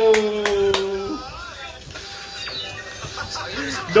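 A man's drawn-out excited "ohhh", sliding down in pitch and ending about a second in, with three quick hand claps over it. After that, a quieter mix of television voices and music.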